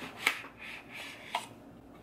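A product box being handled and opened: soft rubbing and sliding of the packaging, with a sharp click about a quarter second in and a smaller click past halfway.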